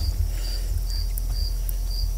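A cricket chirping faintly, about two short high chirps a second, over a steady low hum.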